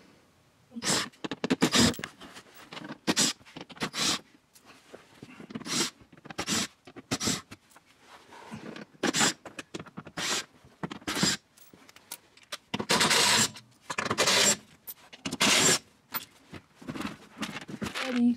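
Cordless drill/driver running in about a dozen short bursts, spinning out the Torx screws that hold a plastic underbody panel.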